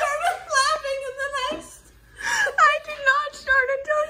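A woman laughing hard in high-pitched, held, wavering bursts, breaking off briefly about halfway through before laughing again.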